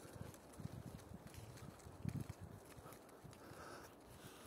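Faint, irregular soft low thuds and knocks, a little stronger about two seconds in.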